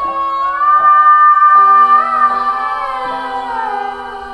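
Song with a female voice holding one long note that rises slightly and then slides down near the end, over sustained backing harmonies; loudest in the middle.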